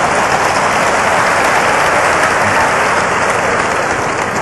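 Audience applauding: dense, steady clapping that eases slightly near the end.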